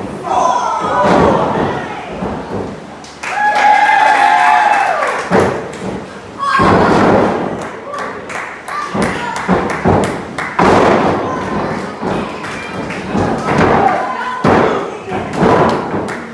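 Wrestlers' bodies slamming onto the canvas and boards of a wrestling ring, many heavy thuds one after another, with the spectators shouting and yelling in reaction, loudest about three seconds in and again near the middle.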